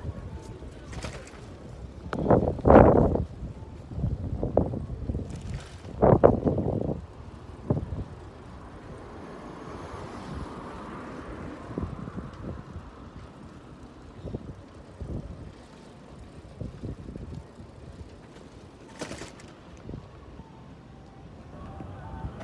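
Evening city-street ambience heard while walking on a sidewalk, with road traffic going by. There are two loud low bursts a few seconds in, likely wind or a passing vehicle on the phone's microphone, then a steadier hum of traffic with smaller bumps.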